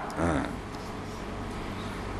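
A short, faint vocal murmur just after the start, then steady room noise with a low hum through the lecture's microphone system.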